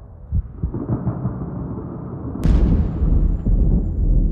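Soundtrack sound design: irregular soft low thuds, then a sudden booming hit about two and a half seconds in that trails into a deep, steady rumble.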